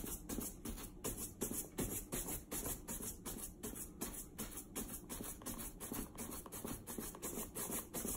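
Shoe brush rubbed briskly back and forth over a leather boot's toe, about four scratchy strokes a second, buffing off conditioner cream that has dried on the leather.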